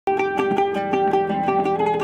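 Long-neck fretless oud picked with a plectrum: a quick run of plucked notes, about five a second, most of them on one repeated pitch.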